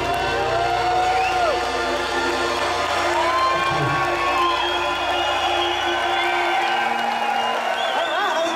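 A rock band's closing chord and electric guitar ringing out, the low end cutting off about two-thirds of the way in, with a crowd cheering over it.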